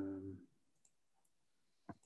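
A man's drawn-out hesitant "um" fades out about half a second in, heard over an online call. Near silence follows, with a few faint ticks and one sharp click near the end.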